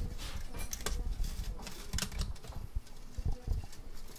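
A run of small clicks and rattles from an acoustic guitar's bridge pins being levered out with string cutters while the slack strings are handled.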